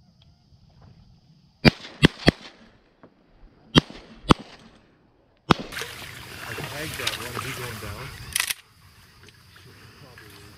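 Shotguns firing a volley of five shots: three in quick succession, then two more about a second and a half later.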